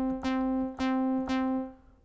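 Teenage Engineering OP-Z synth sounding a single repeated note, played from an Arturia Keystep 37, struck about twice a second. Its envelope decay is being turned down, so the notes shorten and the last one fades away near the end.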